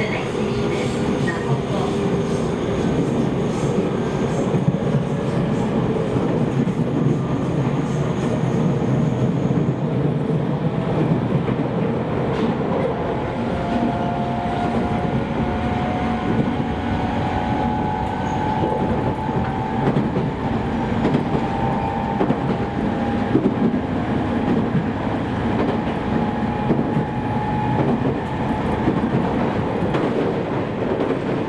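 JR East E501 series electric train running, heard from inside the passenger car: a steady rumble of wheels on rail. From about halfway on, thin whining tones from the traction motors climb slowly in pitch.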